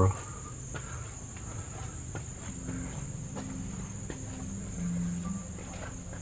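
Steady high-pitched insect trill running throughout, with a few faint footsteps on the path and a faint low hum in the second half.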